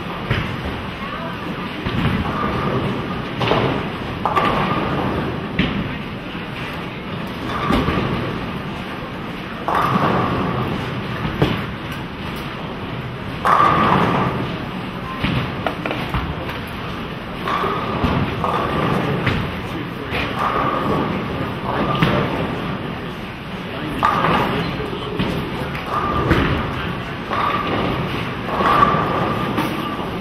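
Bowling centre during competition: bowling balls rumbling down the lanes and pins crashing again and again, every few seconds, over a background of voices.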